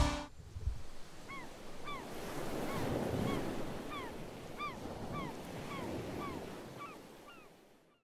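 Surf washing over a beach with gulls calling in short cries, about two a second, the whole fading out near the end. The band's music cuts off just as it begins.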